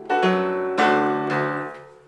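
Upright piano playing a few chords with both hands, a new chord or bass note struck about every half second, the last one ringing and fading away near the end.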